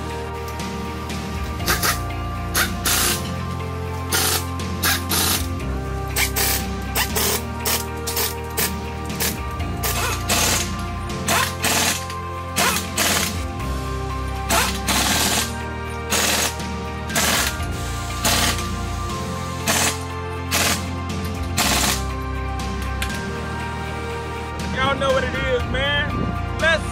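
Background music with a steady bass line. Over it, a pneumatic impact wrench rattles in many short, irregularly spaced bursts as it runs lug nuts onto a wheel.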